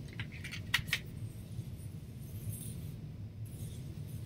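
A few light clicks and clinks in the first second, then a low steady hum of room noise.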